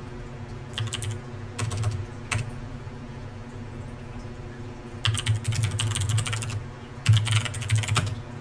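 Computer keyboard typing in bursts: a few short groups of keystrokes in the first couple of seconds, then two longer runs of rapid keystrokes from about five seconds in, typing a shell command.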